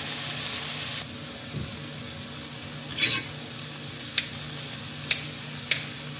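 Food sizzling steadily in a stainless steel skillet, louder for the first second, with sharp snips of KitchenAid food scissors about four times in the second half.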